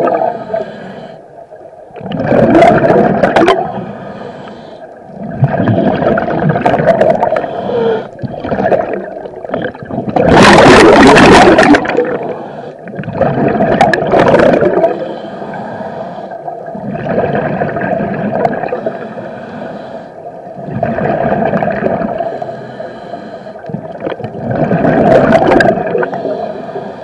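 Scuba breathing through a regulator underwater: a loud gurgling rush of exhaled bubbles about every three to four seconds, quieter in between, the longest and loudest exhalation about ten seconds in.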